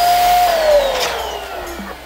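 Electric balloon inflator blowing up a latex balloon: the motor runs at a steady pitch, then is switched off about half a second in and winds down with a slowly falling whine.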